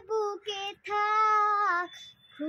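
A young girl singing without accompaniment: two short notes, then one long held note of about a second.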